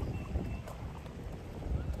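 Wind buffeting the microphone outdoors, a steady low rumble.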